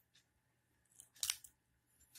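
Fingers handling the plastic battery compartment of a small digital clock: a few short, scratchy plastic clicks a little after a second in.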